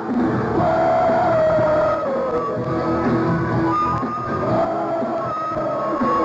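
Hard rock band playing live, with a long held melody note that slides down about a second in and another near the end.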